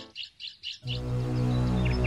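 Small birds chirping in quick, repeated high notes over a film's music score. The music drops out at the start and comes back just under a second in with a low sustained drone.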